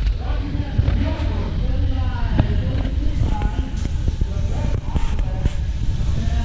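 Indistinct voices of people talking, with no clear words, over a steady low rumble.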